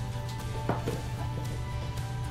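Soft background music with sustained tones, with a couple of light clicks a little under a second in from the beaded necklace being handled.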